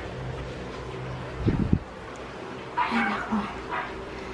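A steady low hum, a dull thump about a second and a half in, then a few short whimpers from a small pet dog near the end.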